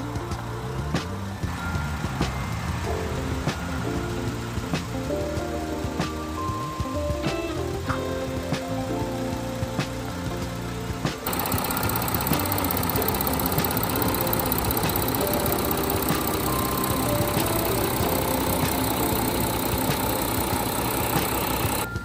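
Background music; about halfway through, a louder steady sound comes in: the Volkswagen Amarok's 3.0 V6 TDI diesel engine idling with the bonnet open.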